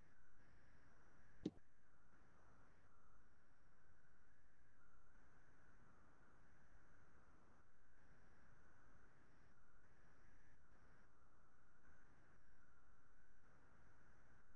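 Near silence: faint room tone with a steady hum, and a single sharp click about a second and a half in.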